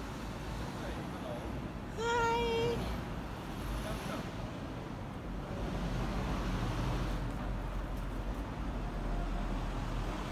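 Street traffic noise, a steady rumble of road vehicles that grows heavier in the second half. About two seconds in, a short, flat pitched tone sounds for under a second.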